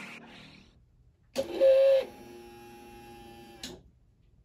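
Small electric motor whirring for a little over two seconds, loudest as it starts, then cutting off abruptly: the actuator of a DIY motorized chute blocker on a mower deck, driving the blocker across the discharge chute.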